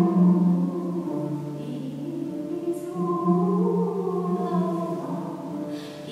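A woman's solo voice singing long, held notes in a slow melody, with oud accompaniment, echoing in a stone church. The pitch drops to a lower held note about a second in, and a new long note begins about three seconds in.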